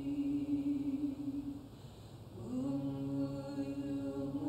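A few voices singing a slow hymn in long held notes, pausing briefly just before halfway and then going on.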